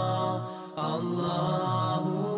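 Intro music of chanted vocal harmony with long held notes over a low sustained tone. It fades and breaks off briefly about half a second in, then comes back.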